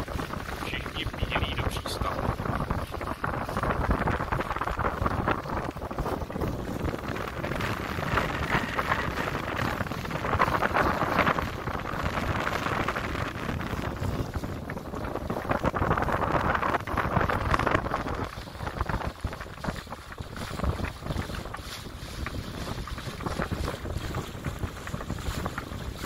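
Wind buffeting the microphone and water rushing along the hull of a sailing yacht under way, swelling and easing in gusts every few seconds in the rising wind ahead of a thunderstorm.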